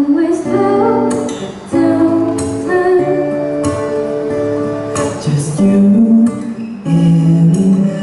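An acoustic guitar accompanies a live vocal duet: a female and a male singer take turns on held, gliding sung lines.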